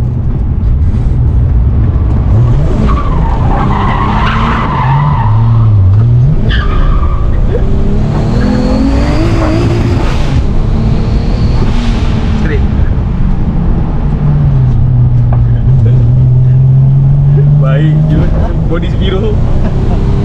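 Car engine heard from inside the cabin while driving: the engine note dips, then climbs steadily for a few seconds as the car accelerates, falls back and holds steady, over continuous road noise.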